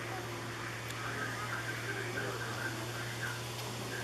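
Steady low background hum with faint, indistinct ambient sounds. No kitten meows stand out.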